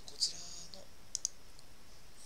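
Computer mouse clicks: one sharp click about a quarter second in, then two quick clicks close together a little past a second, as the Word ribbon is switched to another tab.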